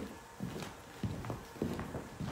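Footsteps of people walking across a room, a run of short thuds at about three steps a second.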